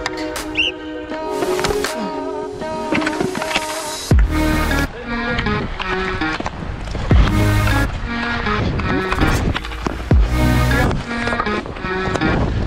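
Background music: a melodic track with sustained notes, joined about four seconds in by a heavy bass beat that repeats.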